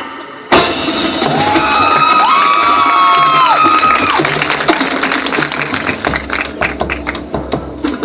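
High school marching band playing: a sudden loud full-band entrance about half a second in, then held brass chords whose pitches slide up and down, over drums and percussion strokes.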